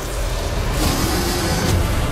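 Loud film-trailer soundtrack: music over a dense, rumbling action sound-effects bed that swells in a rush about a second in, with a sharp hit near the end.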